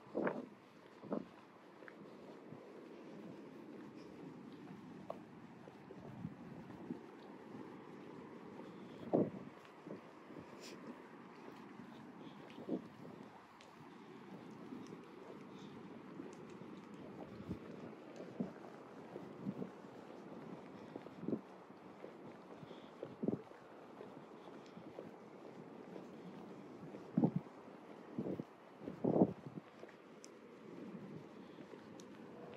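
Breeze buffeting the built-in microphone of a phone: a steady low rumble, broken every few seconds by brief, sharper gusts that are strongest near the end.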